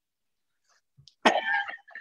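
Near silence for about a second, then a person coughs: one sudden loud burst with a short tail.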